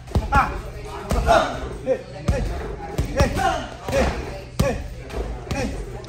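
Boxing gloves punching a double-end bag in quick, uneven combinations, each punch a sharp smack, with voices in the background.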